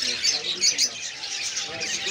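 Many caged birds chirping together, a dense, unbroken mix of short high calls.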